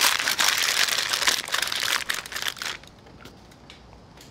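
Aluminium foil crinkling as gloved hands fold and press it tightly around a turkey breast to wrap it. The crinkling stops a little under three seconds in.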